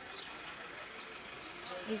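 Insects chirring steadily at one high pitch, over a faint background hiss of the outdoors.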